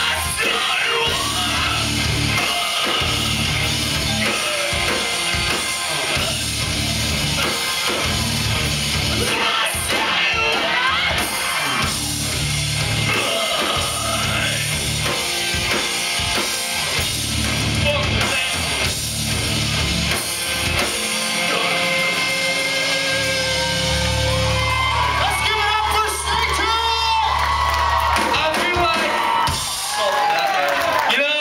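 A rock band playing live through a club PA, heard from the crowd: loud distorted guitars, bass and drums driving rhythmic chords, with sung and shouted vocals; the low chords give way to a long held chord past the middle.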